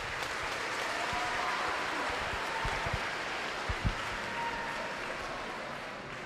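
An audience of students clapping, starting at once and fading off toward the end, with a couple of low thumps about four seconds in.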